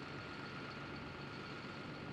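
John Deere 6630 tractor engine running steadily under load, heard faintly as a low even hum.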